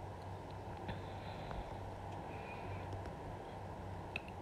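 Steady low background hum with a few faint light taps as a marker and ruler are worked against paper pattern sheets on a table.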